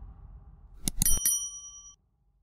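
Subscribe-button sound effect: a click, then a few quick clicks and a bright bell ding whose tones ring on for most of a second and cut off sharply. It plays over a fading low rumble.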